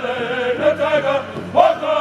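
Powwow drum group singing together in high voices over a steady beat struck on a large shared hide drum, the voices sliding up in pitch at the start of phrases.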